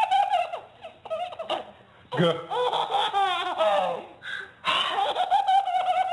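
A baby laughing hard with high-pitched laughs in several bursts of a second or two, with short breaks between them.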